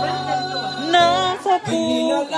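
Live music: a male singer sings with guitar accompaniment, his voice bending in pitch over held low bass notes. The bass notes drop out about a second in.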